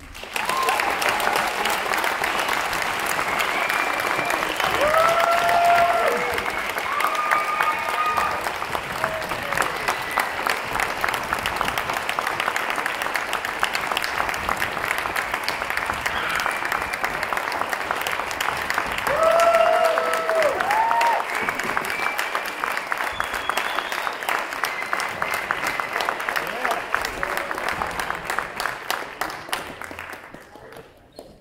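Auditorium audience applauding, with a few whooping cheers about four to eight seconds in and again around twenty seconds in; the clapping thins out near the end.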